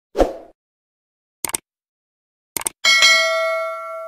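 Subscribe-button animation sound effects: a brief hit, two quick clicks, then a bell ding about three seconds in that rings on and fades.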